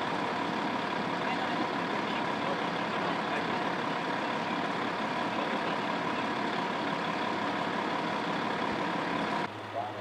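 A large vehicle's engine idling steadily: an even drone with a fixed tone on top. It cuts off suddenly near the end.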